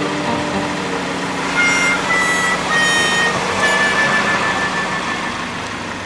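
Car engine running steadily as the car slowly rolls its tyre over a soaked foam block and flattens it. In the middle come a few short high tones, each a little lower than the one before.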